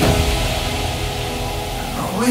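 Progressive house track in a breakdown: the kick drum drops out right at the start, leaving sustained synth chords over a high hiss that slowly fades.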